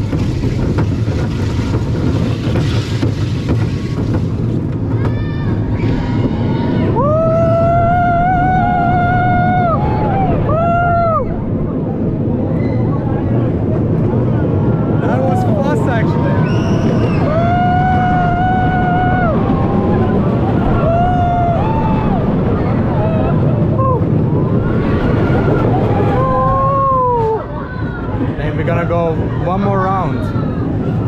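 Small roller coaster train running along its track with a loud, steady rumble. Over it, riders give several long, held whooping cries as the train speeds through the course.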